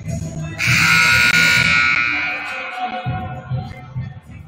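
Gymnasium scoreboard horn sounds once, about half a second in. It is loud and buzzy, holds for around a second, then fades as it rings out in the hall, over background music.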